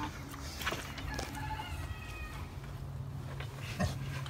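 A drawn-out animal call with a clear pitch, about a second long, over a low steady hum, with a few short knocks of handling.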